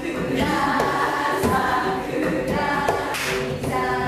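A group of women's voices singing together in unison, kept in time by hand claps.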